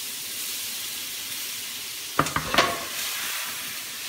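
Garlic, ginger, lemongrass and chili sizzling in hot butter in a stainless steel pan: a steady frying hiss. A few sharp metal clanks from the pan on the gas stove a little past halfway.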